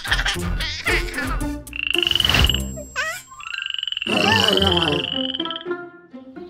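Cartoon frog croaks: two high, rapidly pulsing trills, a short one about two seconds in and a longer one about four seconds in, with a quick falling whistle between them. Music plays in the first second or so.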